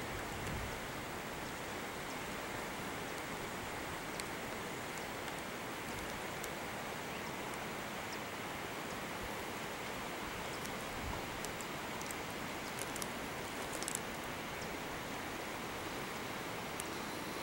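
Steady rushing outdoor noise with a few faint, short high ticks scattered through it, more of them late on.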